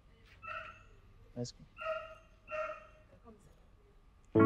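A dog barking three times, roughly a second apart, with a brief shorter sound between the first two barks.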